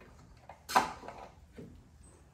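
A few short plastic clicks and knocks from handling a pickup's removed tail light assembly and its pulled-out bulb sockets and wiring. The sharpest and loudest knock comes about three quarters of a second in, and a softer one comes near the end.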